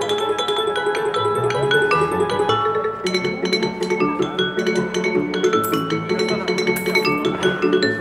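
Water-tuned wine glasses struck in quick succession, playing a melody of ringing notes, several a second, each note sounding on after it is hit.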